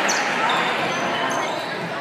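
Basketball game sounds in a gym: a ball being dribbled on the hardwood floor, a few short high sneaker squeaks, and the steady chatter of the crowd in the stands, echoing in the hall.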